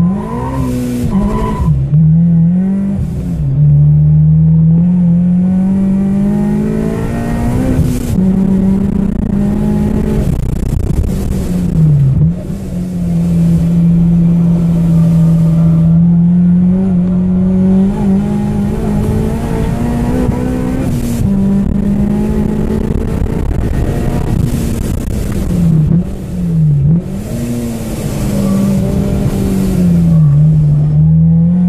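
Supercharged 2007 Honda Civic Si 2.0-litre four-cylinder engine, heard from inside the cabin, revving hard as the car pulls away and accelerates on track. Its pitch climbs steeply at first, then mostly holds high, with brief drops several times at gear changes or lifts.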